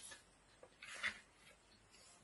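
Picture-book page being turned: a brief, faint paper rustle about a second in.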